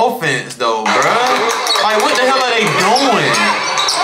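People talking over the noise of a crowded gym, with a basketball dribbling on the hardwood court.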